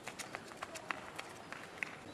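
Running footsteps on asphalt, a series of quick light slaps that grow sparser and fainter as the runner moves away.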